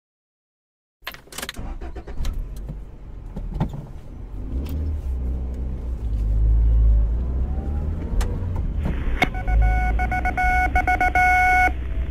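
Starting about a second in, a 1940s car's engine rumbles heard from inside the cabin, with a few scattered clicks. About nine seconds in, the dashboard radio's steady tone comes in over a band-limited hiss, cutting off just before the newscast starts.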